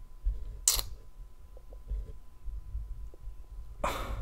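Quiet small-room tone with a low rumble. A short breath sounds about a second in, and another just before the end.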